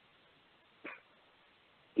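Near silence, a pause in speech, broken about a second in by one very short faint sound.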